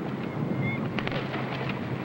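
Steady background noise with a continuous low hum, broken only by a faint brief whistle-like tone and a single click near the middle.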